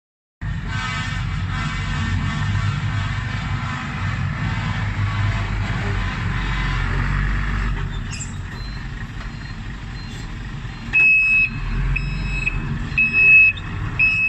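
Hino six-wheel dump truck's diesel engine running as the truck moves. Near the end its reversing alarm starts, a high beep repeating about once a second.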